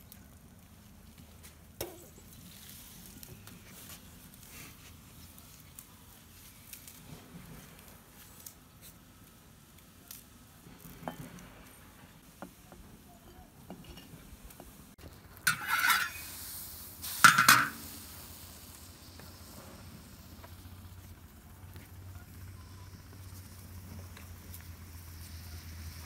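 Soft handling sounds as pieces of pickled sour pork are lifted by hand out of a glazed ceramic crock into a bowl. Two short, louder scraping noises come about sixteen and seventeen seconds in.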